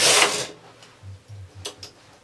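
Knitting machine carriage pushed along the needle bed to knit a row, a loud sliding rattle that stops about half a second in. A few light clicks follow near the end.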